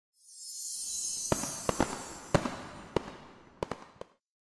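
Fireworks sound effect: a high fizzing hiss that swells and fades, with about seven sharp bangs spread over the next two and a half seconds.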